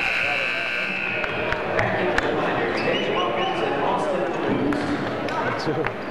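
Gymnasium crowd voices, with a basketball bouncing on the hardwood floor as players line up for a free throw. A high, held tone sounds for about the first two seconds.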